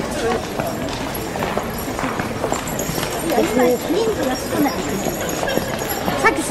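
People talking in the background over a steady outdoor hiss, with a few light clicks or knocks.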